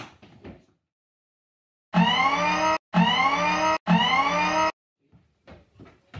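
A loud horn-like sound effect edited onto the soundtrack: three identical blasts of just under a second each, with short gaps between them, each cutting in and out abruptly after a second of dead silence.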